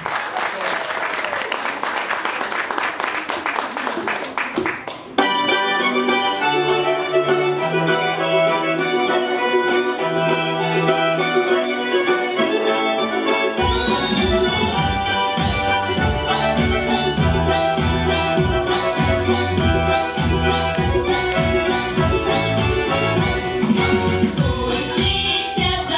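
Audience applause for about five seconds, then a recorded instrumental introduction to a Russian folk-style song cuts in abruptly with sustained chords. A steady bass-and-drum beat joins about halfway through.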